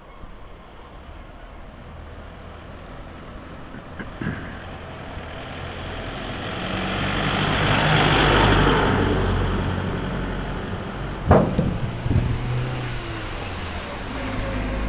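A motor vehicle passes close by: engine and tyre noise swell to a peak about eight seconds in, then fade. A sharp knock about eleven seconds in, and a fainter one around four seconds in.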